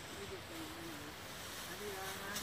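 Faint voices talking in the background over a steady hiss, with no clear words.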